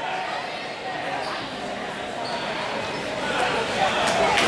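Indistinct background chatter of spectators and officials in a large hall, steady and at a moderate level.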